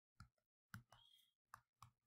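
Several faint, irregular clicks of a stylus tapping on a tablet screen while numbers are handwritten.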